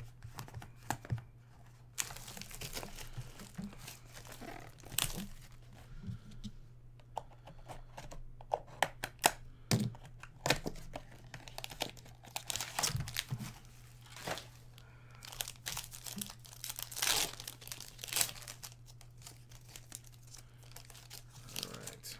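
Plastic shrink wrap and a trading-card pack wrapper being torn open and crumpled by hand, in irregular crackles and sharp snaps. A steady low hum runs underneath.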